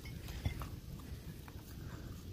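Faint handling noises as a dirt-caked glass teacup is turned in the hand: light rustling and a single small knock about half a second in, over a low steady rumble.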